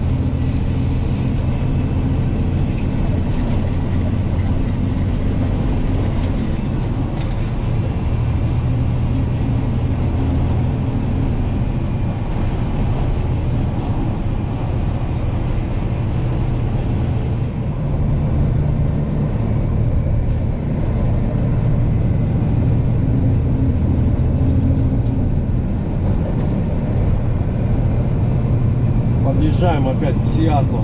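Kenworth T800 dump truck's diesel engine running steadily at highway cruising speed, heard inside the cab as a constant low drone over road noise.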